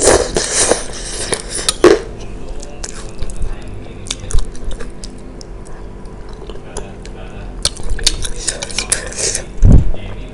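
Close-miked eating sounds: noodles slurped off a spoon at the start, then chewing and metal cutlery clicking against a ceramic bowl, with a heavy thump near the end.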